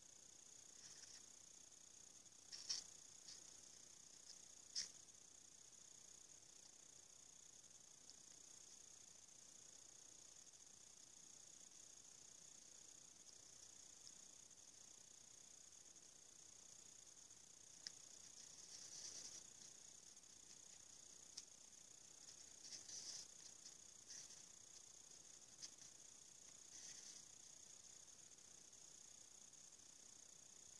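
Near silence: a faint steady hiss, with a few soft clicks and light brushing sounds from a soft paintbrush dabbing metallic powder onto a hot-glue bangle.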